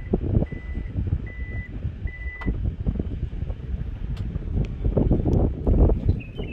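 Toyota Fortuner's power tailgate warning buzzer beeping at one pitch, about one beep every 0.8 s, while the tailgate closes under power. The beeps stop about two and a half seconds in with a click as the tailgate latches. A low rumble of handling noise follows near the end.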